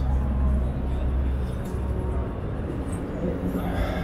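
Busy exhibition hall ambience: a steady low rumble with the murmur of crowd voices, the voices growing more distinct near the end.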